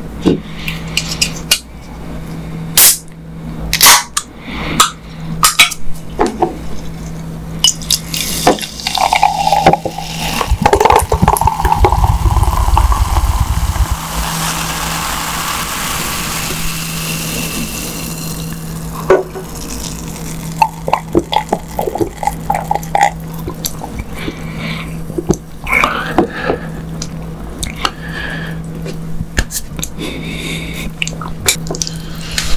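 Cola poured into a glass mug for about five seconds, the pitch of the pour rising a little as the glass fills, followed by several seconds of fizzing as the carbonation settles. Sharp clicks and taps from handling come before and after the pour.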